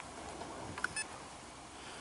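Quiet outdoor background hiss with a faint click and a short, faint beep about a second in.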